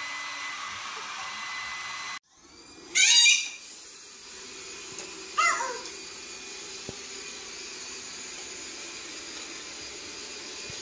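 A robot vacuum cleaner running steadily on a hardwood floor, with two loud high cries that fall in pitch, about three and five and a half seconds in. Before that, a different steady appliance-like noise breaks off suddenly about two seconds in.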